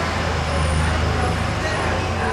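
Steady low rumble of a passing motor vehicle, strongest in the middle and easing off near the end.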